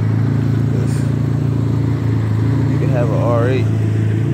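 Car engine idling: a steady low hum that holds an even level throughout.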